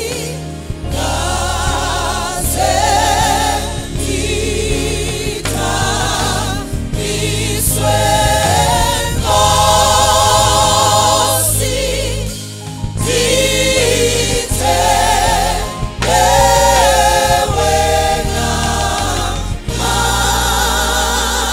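Live gospel choir singing a Xhosa worship song, a woman lead vocalist with backing singers, over instrumental accompaniment with a steady bass line. Phrases are sung with vibrato and held notes, with brief breaths between them.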